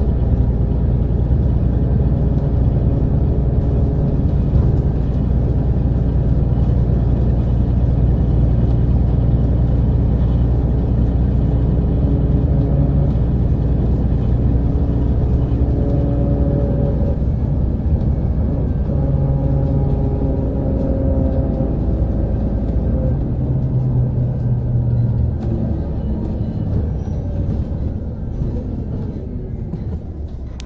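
Volvo B7RLE city bus's diesel engine running with a steady low rumble, its pitch shifting several times. The deepest part of the rumble drops away about three quarters of the way through.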